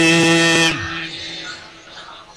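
A chanted devotional vocal line holding one long steady note that stops abruptly under a second in, leaving faint hall background.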